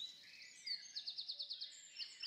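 Faint, high bird calls: short whistled chirps, some sliding down in pitch, and a quick trill of several repeated notes about a second in.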